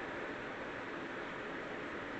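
Steady low hiss of room tone, with no distinct sound standing out from it.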